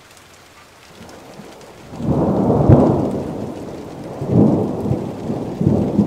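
Rain falling in a steady hiss, with thunder rumbling in about two seconds in and rolling on in several swells, loudest near the three-second mark.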